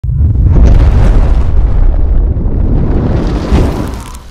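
Cinematic intro sound effect for a film-company logo reveal: a loud, deep rumbling blast that starts abruptly, swells again about three and a half seconds in, then begins to fade near the end.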